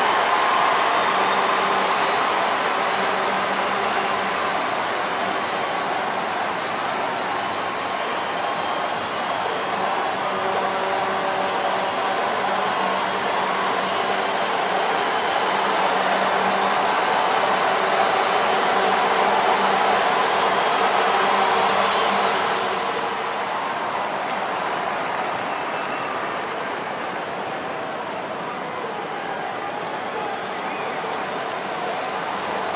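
Steady outdoor ambience of the football match broadcast: an even rushing noise with a faint low hum, easing off somewhat about 23 seconds in.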